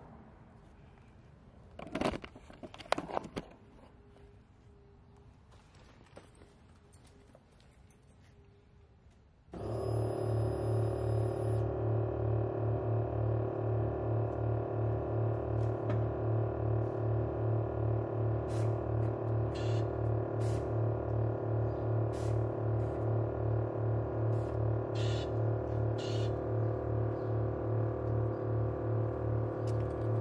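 A few knocks about two seconds in over faint room noise. Then, about a third of the way through, an electric air-ride suspension compressor switches on abruptly and runs with a steady low hum that throbs about twice a second as it builds air pressure.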